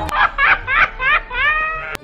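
Cartoon cat's laugh: a rapid string of short, high-pitched cackles, ending in a longer drawn-out one that rises and holds.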